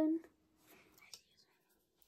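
A girl's voice finishing a sung word right at the start, then a faint whisper and a single soft click about a second in, with little else after.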